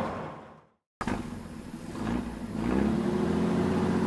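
A machine sound fades out into a moment of total silence. A dump truck's diesel engine then starts abruptly, dips, and rises into a steady run.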